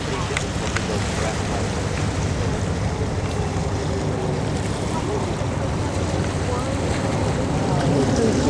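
Steady rushing noise of distant jet engines from the Blue Angels' F/A-18 Hornets flying in formation, mixed with wind on the microphone. Faint voices can be heard underneath.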